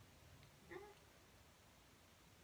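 Near silence: room tone, with one brief, faint high-pitched call or squeak a little under a second in.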